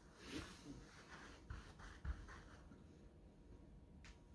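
Near silence: quiet room tone with a few faint, soft rustles in the first half.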